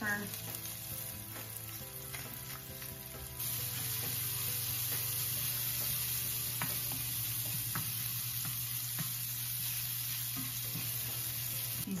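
Sliced shallots frying in olive oil over medium heat, starting to crisp, with a steady sizzle. A wooden spoon stirs them and scrapes and taps the enameled pan now and then. The sizzle gets louder about three seconds in.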